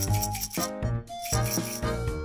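Background music with a steady beat, over the rattle of salt shaken from a tiny glass jar onto raw fish pieces, heard at the start and again in the second half.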